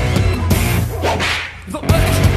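Live rock band playing loud, with electric guitar and drums. About a second in the music thins out into a noisy swish and drops in level, then the full band comes back in just before the end.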